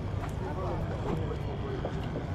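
Faint talk from people nearby, over a steady rumble of wind on the microphone.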